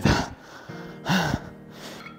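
A man breathing out hard after heavy squats, then about a second in a short breathy laugh.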